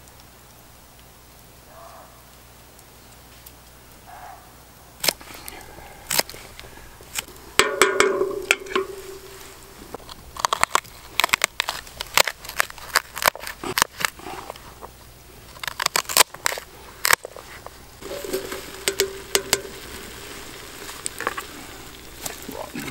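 Knife cutting through celery sticks on a plate: a run of crisp snaps and clicks that starts about five seconds in and is thickest through the middle, after a quiet opening.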